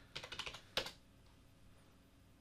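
Computer keyboard typing: a few quick keystrokes in the first second, the last one the loudest, as a console command is typed and entered.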